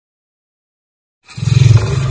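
Silence, then about a second and a quarter in a loud, deep logo-intro sound effect begins suddenly, a roar-like rumble with a hissing top.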